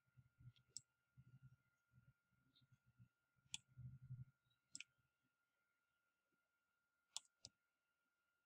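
Near silence broken by a few faint, sharp clicks of a computer mouse, some in quick pairs, as annotation marks are drawn. A faint steady high whine sits underneath.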